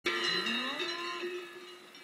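A low animal call that rises in pitch, heard over several steady ringing tones, all fading away within about two seconds.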